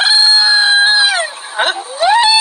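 A man's high-pitched, drawn-out scream, held for about a second and then falling away, followed by a second rising cry near the end.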